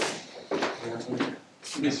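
A chair being moved at a table: a few short knocks and scrapes about half a second apart, with voices in a small room.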